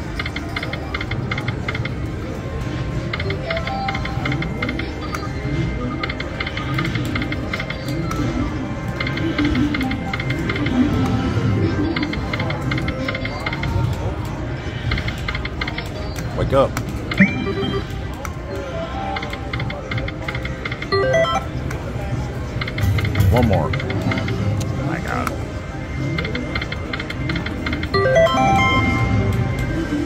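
Ainsworth Temple Riches video slot machine playing its electronic game music and chimes as the reels spin, over a background murmur of casino voices.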